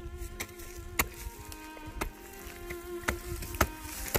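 Steady insect buzzing close by, with about five sharp knocks of a hand hoe chopping into dry soil, the loudest near the end.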